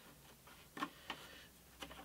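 Quiet, with a few faint, short taps and clicks as a thin bent walnut guitar side is handled against its MDF mould.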